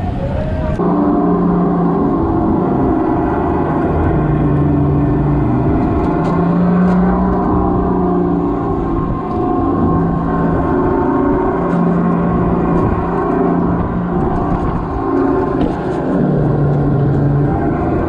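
Electric go-karts running on a rooftop race track, with wind buffeting the microphone heavily and a steady low hum that shifts pitch every second or two.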